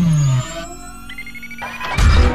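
Synthesized intro sound effects: a falling pitch sweep settles into a low tone that cuts off about half a second in. Quieter held tones and a faint rising high whistle follow, and a loud hit starts right at the end.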